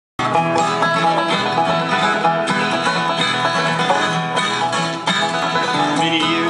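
Banjo and acoustic guitar playing the instrumental introduction of a bluegrass song, with the banjo's quick picked notes over the guitar's strummed chords.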